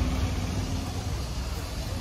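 Steady low rumble of street traffic, with a faint held engine-like tone that fades about halfway through.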